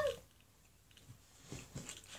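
The last moment of a child's drawn-out sung word, cutting off just after the start, then near quiet with a few faint soft sounds in the second half.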